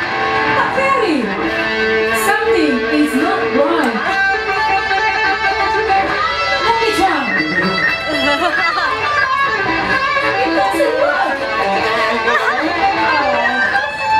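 Bamboo angklung ensemble shaking steady held chords, with voices over the music.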